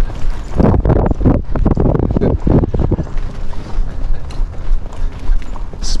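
Hoofbeats of horses moving quickly over soft sand arena footing: a run of dull thuds through the first half, quieter after that.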